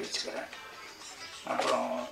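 A man speaking into a microphone over a PA system, with a pause of about a second in the middle before he resumes.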